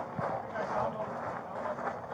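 Footsteps and rustling gear of police officers walking forward together, picked up close on a body-worn camera, with a sharp click just after the start and faint indistinct voices.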